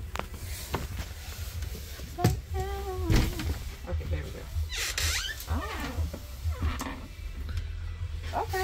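Indistinct voices over a steady low hum, with two sharp knocks about two and three seconds in.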